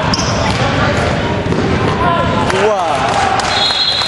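Pickup basketball game on a hardwood gym court: the ball bouncing, sneakers squeaking in a few quick chirps about two and a half seconds in, and players' feet on the wood, with voices echoing in the large hall.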